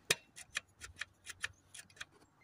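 Hand primer pump on a 1.6 HDi diesel's fuel filter being pressed repeatedly, giving a quick run of clicks about four a second, the first the loudest. It is priming the fuel system after a filter change, drawing fuel up to push the air out.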